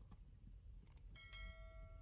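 Faint notification-style sound effect: a couple of soft mouse clicks, then a single bell ding that starts a little past halfway and rings on for over a second.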